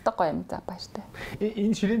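Only speech: people talking in a room.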